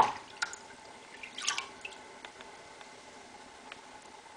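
Bleach poured from a glass measuring cup into a plastic tub of water: a sharp splash right at the start, a short burst of splashing about a second and a half in, then a few last drips falling into the water.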